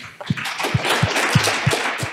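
Audience applauding, with a few separate louder claps standing out from the steady clapping.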